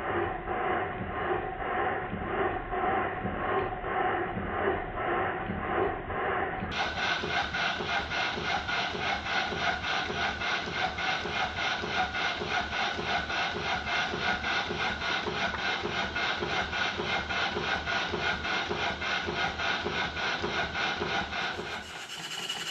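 Stuart No. 9 horizontal model steam engine running, its exhaust and motion beating in a steady rhythm. About seven seconds in the sound turns brighter and the beat quickens.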